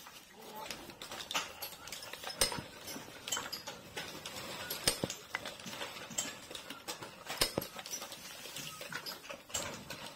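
Irregular light clicks and knocks of cardboard firework tubes being handled and pressed into clay by hand, about one or two a second.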